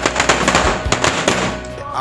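Firecrackers going off on the ground in a rapid, loud crackle that stops about a second and a half in.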